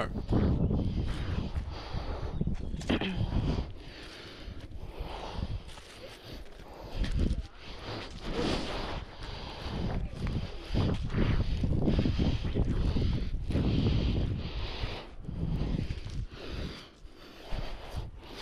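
Wind rumbling on the camera microphone, with irregular rustling and scraping of pine branches and bark as a climber moves near the top of the tree.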